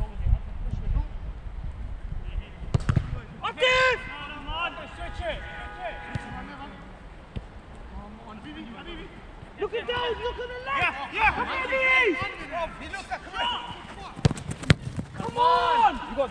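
Footballers shouting and calling to one another across an outdoor pitch, in several bursts of unclear words. A few sharp knocks are heard, one about three seconds in and a quick cluster near the end.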